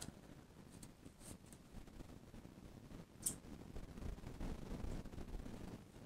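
Faint handling sounds of a clogged plastic squeeze bottle of acrylic paint being squeezed, with one short hissing spurt about three seconds in.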